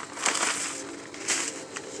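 Paper seed packets and cardboard rustling and crinkling as a gloved hand rummages through a seed display box, with a few sharp crackles.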